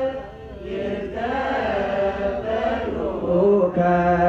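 Voices chanting an Ethiopian Orthodox hymn, holding and bending long notes. The singing dips just after the start and comes back stronger a little past three seconds in.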